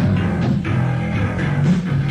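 Rock band playing live, with electric guitar and bass guitar over a drum kit.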